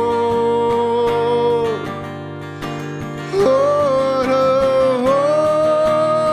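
A man sings a worship song in long held notes over a strummed acoustic guitar. About two seconds in his voice falls away for roughly a second and a half, and the next held line comes in.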